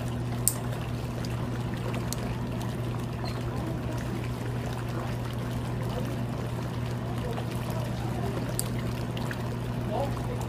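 Pedicure foot spa running: water pouring and churning in the tub over a steady low motor hum.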